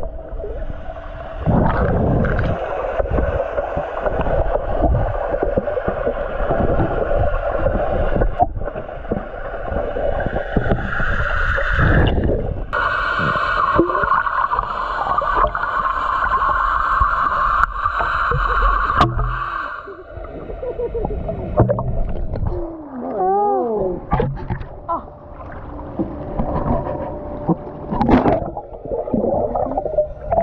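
Muffled underwater sound in a swimming pool, heard through a submerged camera: churning water and bubbles with irregular low thumps, and a steadier rushing sound for several seconds in the middle. About three-quarters of the way in, a person's voice sounds briefly underwater, wavering up and down in pitch.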